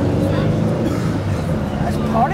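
People's voices talking over a steady low rumble of outdoor background noise.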